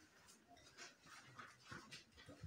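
Near silence: room tone, with a few faint, brief small sounds.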